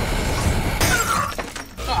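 Cartoon action sound effects: a loud, sustained noisy crashing rush over a deep rumble, with a fresh sharp crash a little under a second in. The sound eases off about one and a half seconds in.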